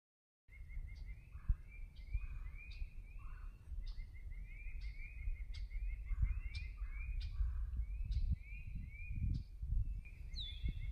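A songbird repeating a short chirping call two or three times a second, over a steady low rumble.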